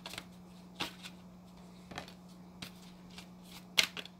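A deck of oracle cards being shuffled by hand in short, scattered riffles about a second apart, ending in a louder sharp slap as a card is laid down on the table. A faint steady low hum runs underneath.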